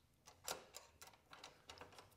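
A few faint, irregular clicks and taps from a T-handle hex wrench tightening bolts on the aluminium fence brackets, with one clearer click about half a second in.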